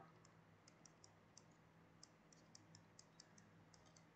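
Near silence broken by faint, irregular small clicks, about fifteen of them, made while a note is handwritten on the screen with a pen-input device.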